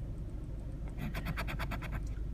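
A coin scraping the latex coating off a scratch-off lottery ticket: a quick run of about ten rapid strokes in the second half.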